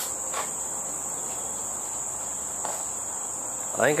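Insects trilling, a steady high-pitched drone that does not break, with a couple of faint soft taps.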